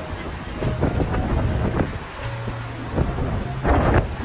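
Strong sea wind buffeting the microphone in gusts, a heavy low rumble with the loudest gust near the end.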